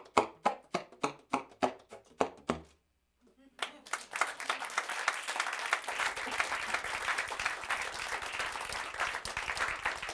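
Baritone saxophone played solo in short, detached notes about three a second, breaking off before three seconds in. After a brief silence, an audience breaks into applause that carries on.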